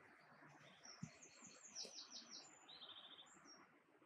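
Faint song of a small bird: one phrase of quick, high trilled notes that steps down in pitch, lasting about three seconds. A soft knock about a second in.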